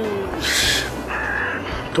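A man's voice pausing between words: a short breathy hiss, then a brief held hesitation sound before he speaks again near the end.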